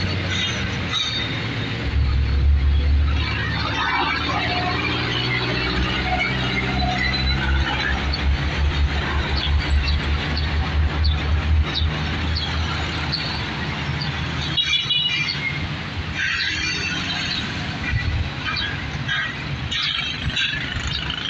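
Road traffic passing through an intersection: the low rumble of vehicle engines, with a heavy tanker truck's diesel throbbing loudest around the middle, and scattered high-pitched squeals.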